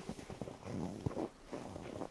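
Footsteps crunching and squeaking in fresh snow, a steady walking pace of short crunches.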